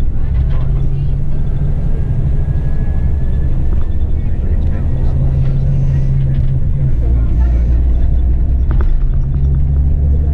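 Cabin noise inside a moving coach: a loud, steady low engine drone and road rumble, the engine's hum shifting a little in pitch.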